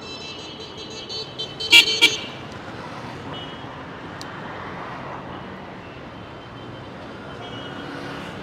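Street traffic noise with a vehicle horn honking, sounding twice sharply and loudly about two seconds in.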